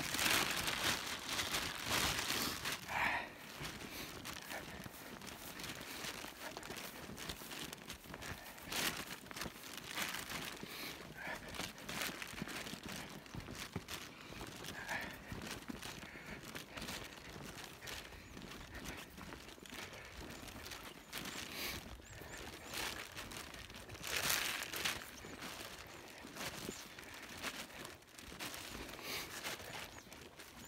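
A person's footsteps through dry meadow grass, with the grass and clothing rustling at each step. The rustling is loudest in the first few seconds and again about 24 seconds in.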